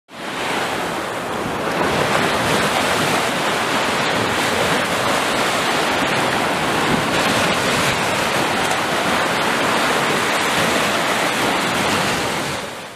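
Ocean surf: small waves breaking and washing up onto a beach, a steady rushing noise that fades in at the start.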